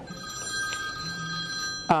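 A mobile phone ringing, an electronic ringtone of several steady held tones that cuts off just before the end.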